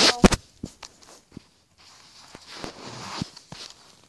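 Handling noise from a handheld phone being moved around: a couple of sharp knocks right at the start, a few scattered clicks, then a soft rustle.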